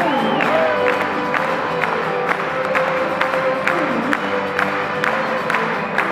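Live band music: acoustic guitar and mandolin strummed in a steady rhythm under a lap steel guitar, whose notes slide up and down in pitch in the first second.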